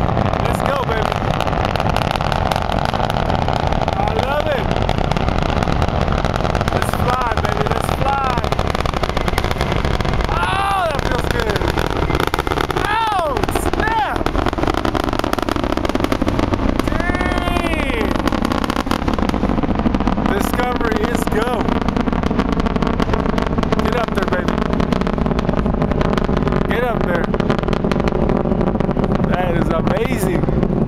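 Space Shuttle Discovery's solid rocket boosters and main engines in flight after liftoff, heard from about three miles away: a loud, steady, deep roar. Short whoops from voices rise and fall over it every few seconds.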